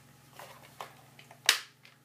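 A sharp plastic click about one and a half seconds in, after a couple of fainter handling clicks: the back compartment cover of an RC helicopter's controller snapping shut.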